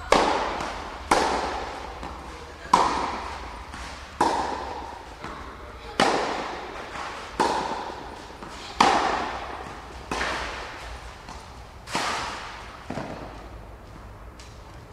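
Tennis ball struck by rackets in a rally from the serve, about ten sharp impacts one to two seconds apart. Each hit echoes and dies away slowly in a large indoor tennis hall.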